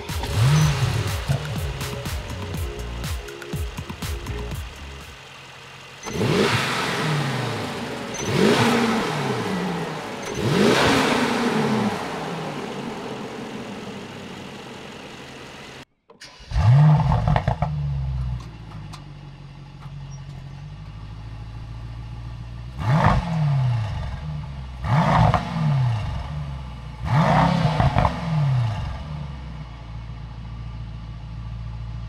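Mercedes-AMG E63 S's 4.0-litre twin-turbo V8 starting with a flare of revs and settling to idle, then revved three times, each rev rising and falling back. After a sudden cut it starts again with the same flare and is blipped three more times.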